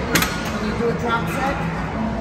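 One sharp clack of gym equipment about a quarter of a second in, over a steady background of distant voices.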